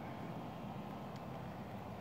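Steady, faint outdoor background noise, a low even rumble with no distinct events.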